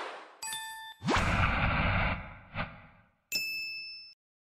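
Animation sound effects: a bell-like ding, then a rising whoosh with a swish, a short swish, and a final bright chime that cuts off suddenly.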